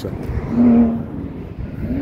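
A vehicle engine on the mountain road nearby, swelling to its loudest with a steady engine note about half a second in and then fading.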